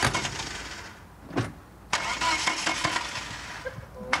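Starter motor of an old UAZ ambulance van cranking the engine in two attempts that fade out without the engine catching, with a sharp click between them: the worn-out van is hard to start.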